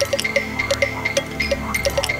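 Electronic music: held synthesizer tones under a repeating pattern of short synth blips and clicks, about three a second.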